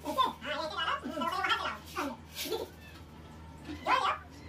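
People talking in unclear speech, with a low steady hum underneath.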